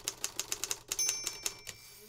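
Typewriter sound effect: a quick run of key clacks, about seven a second, with a bell ding about a second in that rings on as the clacks thin out.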